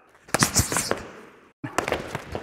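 A quick flurry of sharp slapping impacts that fades and cuts off abruptly about a second and a half in. More sharp slaps follow, of hands and forearms striking and blocking in close-range Wing Chun sparring.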